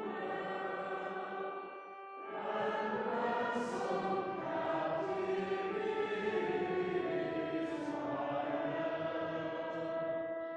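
Voices singing a slow hymn together with pipe organ accompaniment, sustained notes throughout. A phrase ends about two seconds in with a brief dip before the next line begins.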